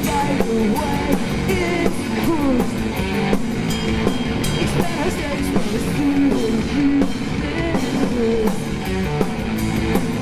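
Three-piece rock band playing live and loud: electric guitar, electric bass and a drum kit together, at a steady full volume.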